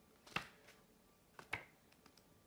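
Two sharp clicks about a second apart, each with a lighter click just before it, over a quiet room.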